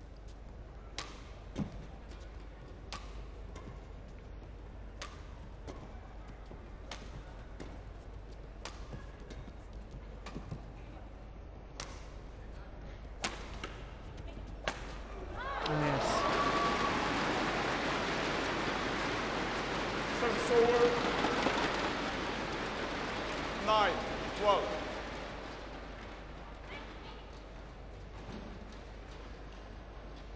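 Badminton rally: racket strings striking a feathered shuttlecock in sharp single hits every second or two, coming faster toward the end. The rally ends about halfway through, and the crowd cheers and applauds for about ten seconds with a few shouts before it dies down.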